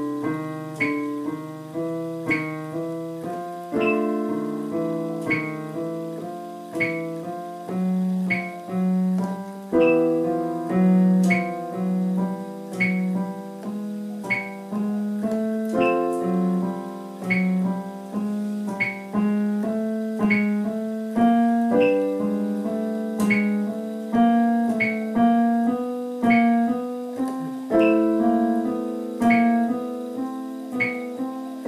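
Digital piano playing slow root-position triads up the C major scale. Each chord is held for four beats while the left hand's inner fingers move in a repeating pattern under its held outer notes, and the chord changes about every six seconds. A metronome at 40 beats a minute clicks about every second and a half.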